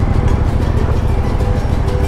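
Suzuki V-Strom motorcycle riding at low speed, a steady low rumble of engine and wind on the bike-mounted microphone, with background music coming in faintly over it.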